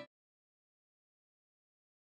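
Dead silence: the background music cuts off abruptly at the very start.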